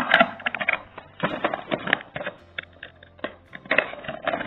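Handling noise from small cardboard cable boxes and a coiled audio cable: short clusters of clicks, taps and rustling as the packaging is shifted and opened.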